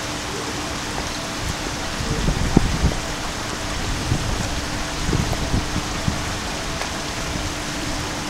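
Shallow river water rushing steadily down a concrete-lined channel and over a low step, a continuous even hiss. A few low rumbles swell under it about two and five seconds in.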